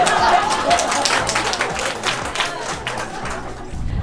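Audience applause, many hands clapping and thinning out toward the end, with music underneath.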